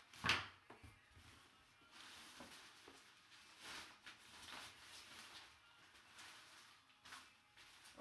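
Quiet rustling and handling of a cloth drawstring bag and a plastic-wrapped jersey in a cardboard box. A sharp knock about a quarter of a second in is the loudest sound.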